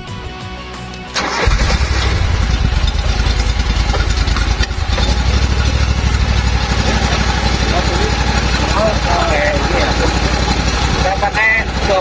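Vanguard engine of a portable fire pump starting suddenly about a second in and then running steadily.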